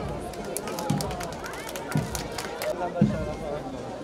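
A bass drum beating about once a second at a marching pace, over the chatter of a crowd, with a run of sharp clicks in the first half.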